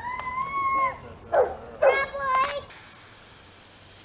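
Belgian Malinois whining: one high, drawn-out whine about a second long, then a short yelp and a shorter whine. The sound then cuts abruptly to a steady hiss.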